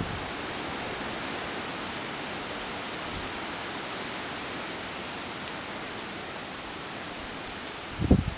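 Steady, even hiss of outdoor ambience, with no distinct events in it.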